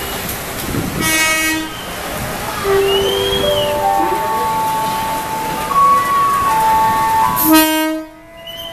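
Train horn sounding two short blasts, one about a second in and one near the end, over busy station noise with other scattered steady tones.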